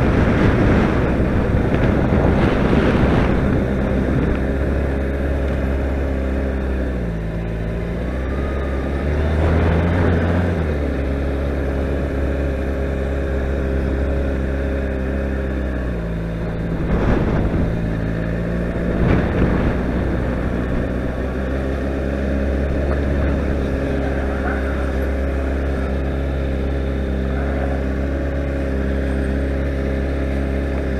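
Honda CBR600RR's inline-four engine running at low revs as the bike rolls slowly, its pitch dropping about seven seconds in and again about sixteen seconds in as the throttle is eased off, then picking up again. Wind noise on the helmet microphone.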